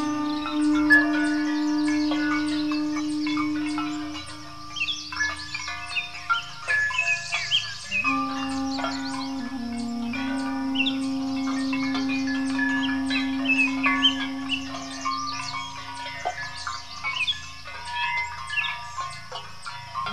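Armenian duduk playing long, held low notes, with a pause of a few seconds early on and a brief dip in pitch when it comes back in. Birds chirp and tweet throughout, clearest while the duduk rests.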